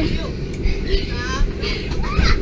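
Indistinct voices over a steady low rumble, with a short high, wavering voice about a second in.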